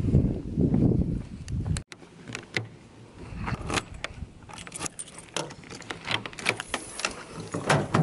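A bunch of keys on a ring jangling and rattling, with short metallic clicks as a key works the lock of a pickup's bed storage vault. The first couple of seconds hold a low rumbling noise that cuts off abruptly.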